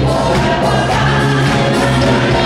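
Live pop band of electric guitar, bass guitar, drums and keyboard playing a song, with several voices singing together over it, recorded from the audience in a concert hall.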